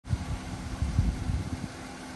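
Wind buffeting the microphone in uneven low rumbles, with a faint steady hum underneath.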